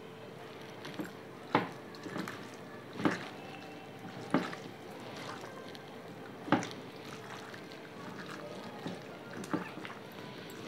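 A hand squishing and kneading raw chicken pieces in a wet spice marinade in a bowl, with a few sharp wet squelches every second or two over a faint steady hum.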